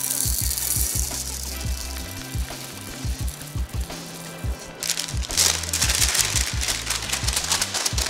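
Background music with a steady beat. Over it, dried popcorn kernels rattle into a metal measuring cup as they are poured, briefly at the start and again for a couple of seconds in the second half.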